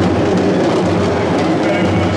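Several traditional double-headed barrel drums played together in a steady, dense, driving rhythm.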